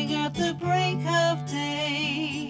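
A woman singing a folk-style song with acoustic guitar accompaniment, her voice holding a note with vibrato near the end.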